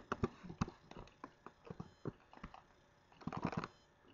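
Scattered clicks of a computer keyboard and mouse, with a quick run of clicks about three seconds in.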